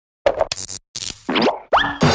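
A quick run of cartoon sound effects: several short pops and bursts, then two quick rising boing-like glides.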